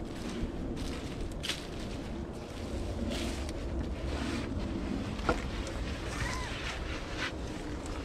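Wind buffeting the microphone in a steady low rumble, with a few scattered crunches and rustles of dry leaf litter and twigs underfoot as someone steps through the woodland floor and into a stick den.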